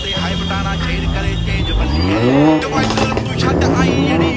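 A car engine revving once about two seconds in, its pitch climbing quickly and then dropping back, with voices over it.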